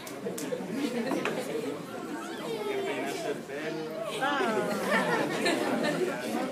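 Several voices talking at once in a large room, with no single speaker clear; a louder, higher-pitched voice joins about four seconds in.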